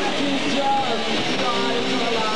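Live rock band playing: electric guitar, bass and drums, with a voice gliding up and down in pitch over the band.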